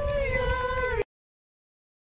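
Voices singing a long held note, cut off abruptly about a second in.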